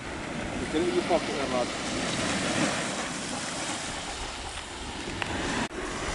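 Small waves breaking and washing up a sandy shore, with wind on the microphone; the sound drops out briefly near the end.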